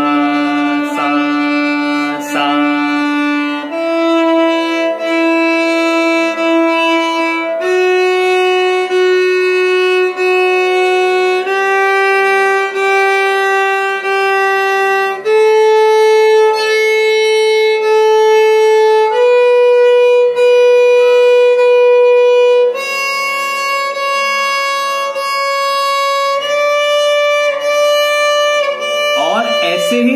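Violin playing a slow ascending alankar exercise. Each swara of the scale is repeated three times before it steps up to the next, climbing through about eight notes, roughly four seconds per note.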